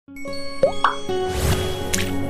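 Channel intro sting music: held synth tones with two quick rising pops a little over half a second in, a swelling whoosh, and a bright hit just before the end.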